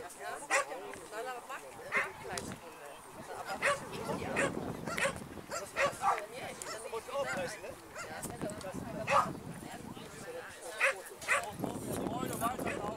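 A dog barking in short, sharp barks at uneven intervals, about nine of them, the loudest about three-quarters of the way through, with people's voices murmuring underneath.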